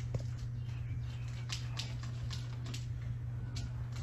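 Faint, scattered soft ticks and rustles of a paper butterfly and plastic straws being worked by hand to flap the wings, over a steady low hum.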